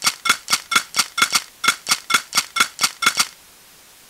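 Electronic music: a rapid, even train of sharp pitched clicks, about four or five a second, that stops about three seconds in, leaving a steady hiss like radio static.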